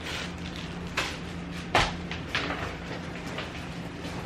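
Plastic packaging rustling as bagged clothing is handled and moved aside, with a soft knock a little under two seconds in, over a steady low hum.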